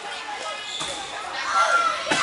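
Voices of spectators and players echoing in a gymnasium during a volleyball rally, with the thud of the volleyball being played.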